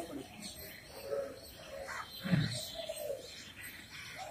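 Pigeons cooing, with a short dull thump a little past two seconds in.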